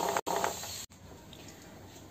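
Ghee-roasted almonds and cashews sliding off a metal spatula onto a plate, a brief rattle in the first half second, then faint room tone.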